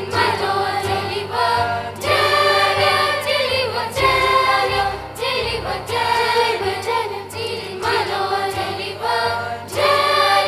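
Junior church choir of children singing together, sung phrases with new notes entering about every one to two seconds.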